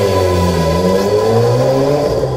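Tuned Peugeot 206 CC's engine revving as the car pulls away, its pitch dipping and then climbing again.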